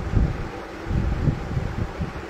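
Irregular low rumbling thumps of handling noise on a phone microphone, with a light rustle as a cotton garment is spread out and smoothed by hand.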